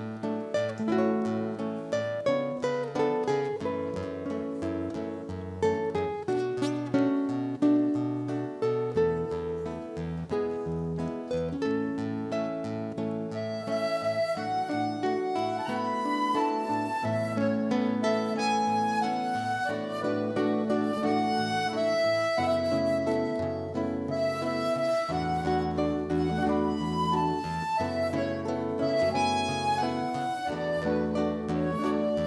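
Instrumental introduction played by a small acoustic ensemble: plucked nylon-string guitars, one of them a seven-string, with accordion and flute. The first part is mostly plucked guitar notes. About halfway in, held accordion bass and held melody notes from the flute and accordion take over.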